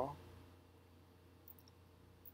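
Low steady background hiss with a single faint click about one and a half seconds in.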